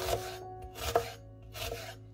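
Chef's knife slicing through an onion and knocking on a wooden cutting board, three cuts less than a second apart.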